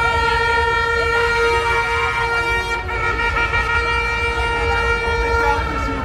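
A horn held on one long steady note, breaking off briefly near the end and starting again, over a low rumble.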